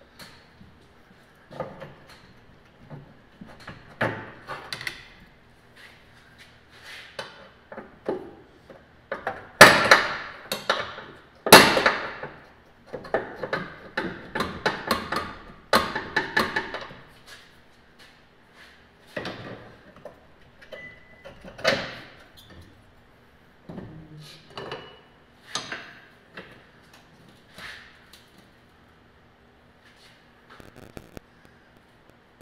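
Irregular metal knocks, clanks and rattles as hand tools work the rear leaf spring's front eye and hanger loose under the car, with two loud sharp bangs around ten and twelve seconds in.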